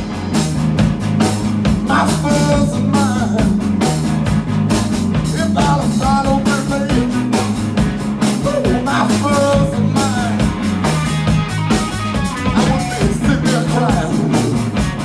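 Live blues-rock band of electric guitar, electric bass and drum kit playing a steady, driving groove.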